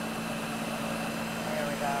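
Ninja countertop blender running steadily at medium speed, blending a cold soup: a constant motor hum with a whirring noise over it.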